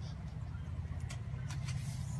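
Paper pages of a hardcover picture book being turned, with a few short crisp rustles in the second second, over a steady low rumble.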